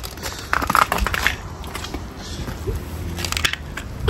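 Irregular clicking, crackling and rustling as tools and small plastic parts are handled in an electrician's tool bag, with footsteps on tarmac toward the end.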